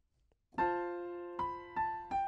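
Piano playing the opening of the melody over a held F major voicing: a chord with A on top is struck about half a second in, then a higher B and back to A near the end, each note ringing and slowly fading.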